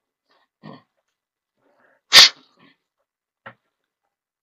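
A single loud, short sneeze about two seconds in, with a faint breath-like sound a second or so before it and small clicks after.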